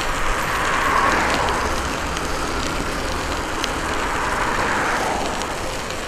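Studded bicycle tyres rolling at speed on wet pavement, a steady hiss, with wind rumbling on the microphone.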